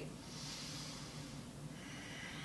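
A faint breath out through the nose, lasting about a second.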